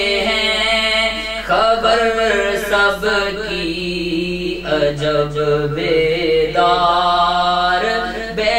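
A man's voice chanting Sufi devotional poetry (kalam) in a melodic recitative, in long phrases with held, wavering notes and brief breaks between lines.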